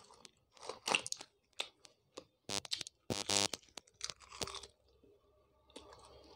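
Close-miked chewing, heard as a string of short, irregular crunches, with a fried puri torn apart by hand. The last second or so is quieter.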